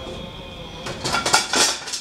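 Dishes and utensils clattering as they are handled: a quick, loud run of knocks and clinks starting about halfway through.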